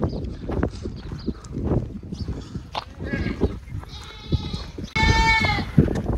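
Goats bleating: a clear, high bleat near the end, with a fainter one about a second before it, over low rumbling noise.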